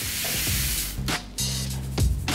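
Small hard royal-icing sprinkles shaken in a wire-mesh sieve, a continuous rattling hiss that stops about halfway through, sifting the icing dust from the sprinkles. Background music plays under it.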